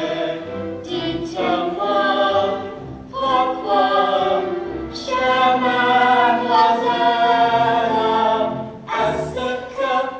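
A young man and children singing a stage song, with held notes in phrases that break off briefly about every two to four seconds.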